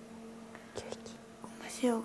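A woman whispering softly, counting in Japanese, which starts near the end. Before it is a quiet pause with a steady low hum underneath.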